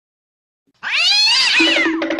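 A cat's single meow, rising then falling in pitch, lasting about a second and starting just under a second in. A rhythmic music beat takes over near the end.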